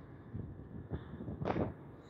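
Faint, steady background noise with no speech, and a brief soft sound about one and a half seconds in.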